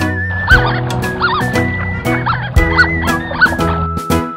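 Cartoon ducklings quacking, a string of short quacks over light children's background music.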